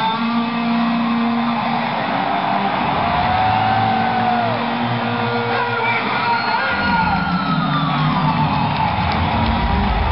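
Live electric guitar solo through an arena PA: long held notes that bend and slide up and down in pitch, over crowd noise, with heavier low end coming in about seven seconds in.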